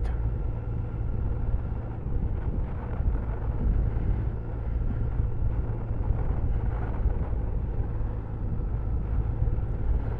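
Motorcycle engine running steadily at an even pace, mixed with wind and road rumble, heard from a camera mounted on the bike.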